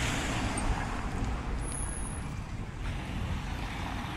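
Road traffic noise on a busy city street: a steady rumble and hiss of passing vehicles with no distinct events.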